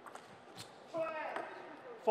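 A couple of light ticks, like a table tennis ball bouncing, then a man's short call about a second in.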